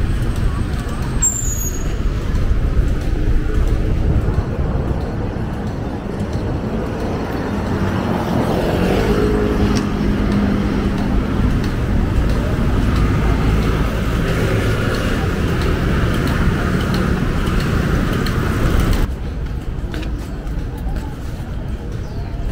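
Busy street traffic: cars and motor scooters running past, with one vehicle's engine standing out around the middle, and faint voices of passers-by. The traffic noise drops abruptly to a quieter level near the end.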